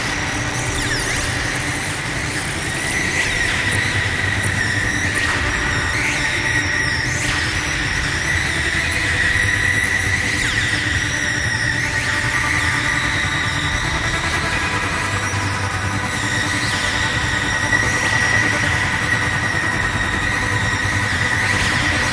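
Experimental electronic noise music: a dense, unbroken wash of hiss and grinding noise with a high, steady whine running through it.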